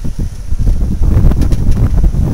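1915 Metz touring car's four-cylinder engine running, a loud, rapid low-pitched putter.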